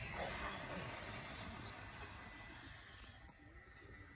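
Several people forcefully breathing out together in one long hissing exhalation, a qi gong release of anger. It starts suddenly on the count and fades after about three seconds.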